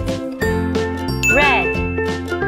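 Light, tinkling children's background music. About halfway through, a short sound effect bends up and then down in pitch, with a high ding held under it to the end.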